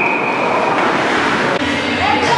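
Referee's whistle blown once, a single held high tone that stops a little under a second in, over the steady noise of the hockey rink.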